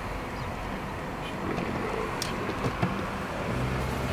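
Car driving in city traffic: steady road and engine noise picked up by a handheld iPod Nano's built-in microphone, with a few sharp clicks about two to three seconds in from the device being handled, and a low engine hum coming up near the end.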